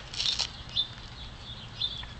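Desert tortoise biting into a head of romaine lettuce: a short, crisp crunch just after the start. A few faint, short, high chirps follow.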